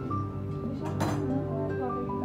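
Background music, with a single sharp clink of a china teacup about a second in.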